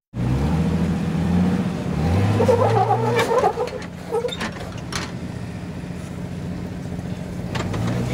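Rock-crawling Jeep's engine revving up and down in short pulls over the ledges, then running steadily at low revs from about halfway through, with a few sharp knocks around the middle.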